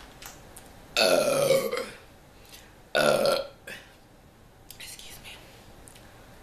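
A woman burping loudly twice: a long burp of about a second, then a shorter one about two seconds later.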